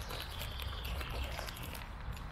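Light steps and rustling on a forest floor, with a low rumble of wind and handling on a handheld camera's microphone.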